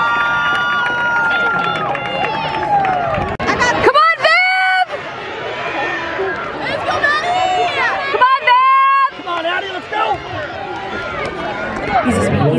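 Grandstand crowd cheering and shouting during a race, many voices at once, with two loud, high-pitched yells close by about four seconds in and again about eight and a half seconds in.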